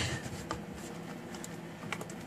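Rubbing and handling of cables with a couple of small clicks as an audio lead is plugged into a socket, over a faint steady hum.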